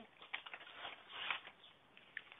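Faint handling of a board game's plastic insert tray of pieces being lifted out of its cardboard box, with a few light clicks and a brief rustle about a second and a quarter in.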